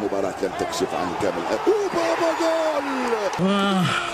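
A man's voice talking excitedly, with one long drawn-out call about halfway through, over a steady background hiss.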